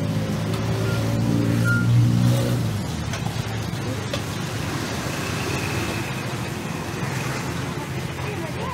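A motor vehicle engine hum swells to its loudest about two seconds in and fades within a second, as if passing close by. It is followed by the general hubbub of a busy outdoor street market.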